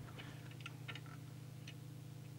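Faint, scattered small clicks and ticks as a plastic trimming tool is fitted into the core of a coil in the radio's chassis, over a steady low hum.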